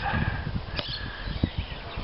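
Low, uneven rumble with irregular dull thumps picked up by the camera's own microphone, with one brief sharper click a little under a second in.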